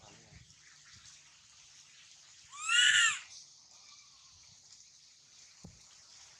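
A baby long-tailed macaque gives one loud, high-pitched cry about two and a half seconds in, rising and then falling in pitch: an infant's distress call for its mother. A few faint low knocks follow near the end.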